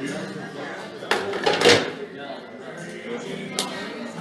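Pool balls clacking on a pool table: a sharp clack about a second in, then a louder clatter, and a single clack near the end, over bar chatter and background music.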